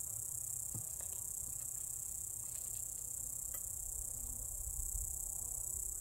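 Steady, high-pitched chirring of insects, with a low rumble underneath and a few faint light clicks.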